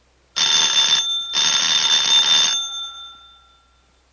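An electric bell rings twice, a short ring and then a longer one, its tone lingering and fading for about a second after the second ring stops.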